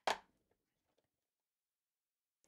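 A single brief scrape of cardboard as the GoPro box's flap is handled, sharp at first and fading fast, followed by a few faint handling sounds.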